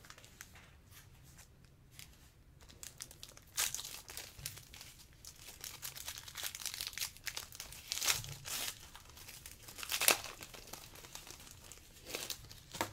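A trading card pack's wrapper crinkling and tearing as it is opened by hand, in irregular crackles, loudest around eight and ten seconds in.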